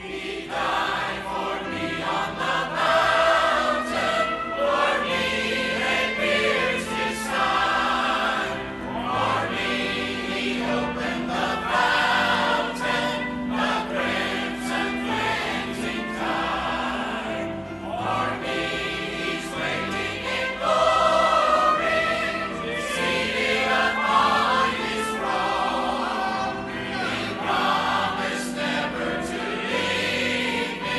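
A choir singing a hymn with instrumental accompaniment, continuous throughout.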